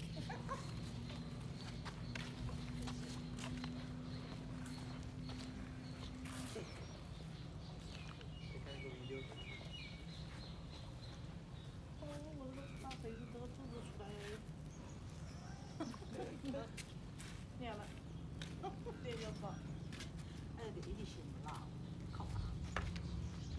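Faint outdoor ambience under a low steady hum, with a short run of bird chirps about eight to ten seconds in and indistinct voices through the second half.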